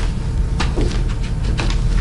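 Handling noise: several light knocks and rustles from things being moved about, over a steady low rumble.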